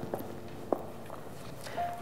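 Faint rustling with a few light clicks as hands rummage through a handbag, the sharpest click about three-quarters of a second in.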